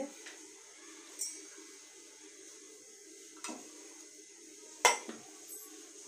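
A stainless-steel mixer-grinder jar clinking as it is handled and its lid put on: three short metal knocks, the loudest about five seconds in, over a steady low hum.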